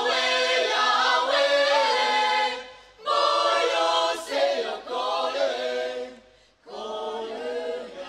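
Mixed choir of women's and men's voices singing a cappella in phrases, breaking briefly about three seconds in and again near six and a half seconds; the last phrase is softer.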